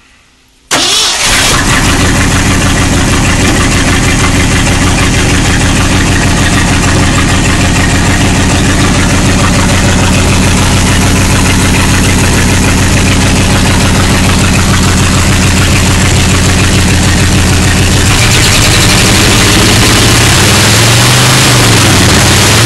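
A 1975 Ford 360 V8 starts up a little under a second in and settles into a steady idle. From about eighteen seconds in the sound gets harsher, and near the end the idle note wavers a little.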